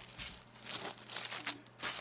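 Irregular crinkling and rustling made up of many short, sharp crackles, the kind of sound that plastic sheeting or close handling of the recording device makes.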